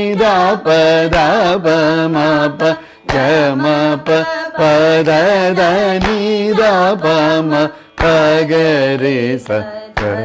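Carnatic vocal singing of a beginner's lesson exercise: a voice holding notes with wavering gamaka ornaments, pausing briefly twice. Soft hand claps keep the tala about every two seconds.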